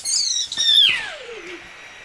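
A child's high-pitched squeal that slides steadily down in pitch over about a second, then fades out.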